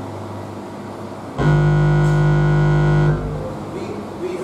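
A church keyboard holds one steady chord for under two seconds, starting about a second and a half in and then stopping, filling a pause in the sermon.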